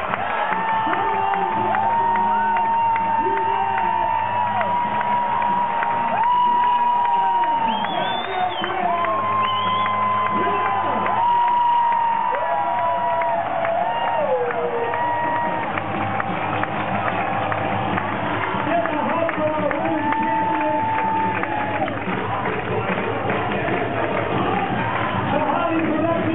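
A large crowd cheering and whooping, with many long held voices rising and falling, over steady loud music.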